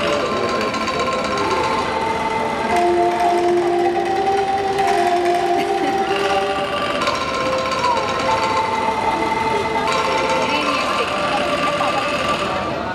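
Angklung ensemble playing: many bamboo angklung shaken to sustain rattling, trembling notes, forming a melody and chords that change every second or two.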